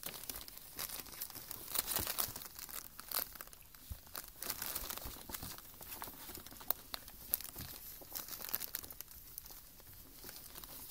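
Paper gift bag crinkling and rustling as two ferrets wrestle inside it, with irregular sharp crackles and scratches as they scrabble at the paper.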